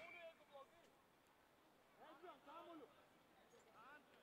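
Near silence with faint, distant shouting voices: a short call at the start, a couple of calls about two seconds in and another near the end.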